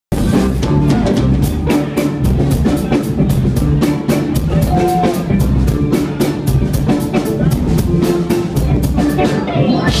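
Live band playing instrumental funk: drum kit keeping a steady beat, with electric bass, electric guitar and keyboard.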